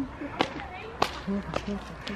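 A few sharp clicks or snaps, roughly half a second apart, over faint voices.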